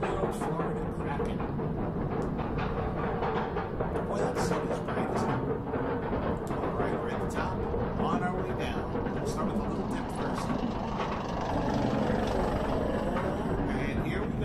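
Kraken roller coaster train running up its lift hill, a steady mechanical clatter and hum with scattered clicks, heard from the front seat. A trombone mouthpiece is buzzed over it, its pitch sliding in the second half.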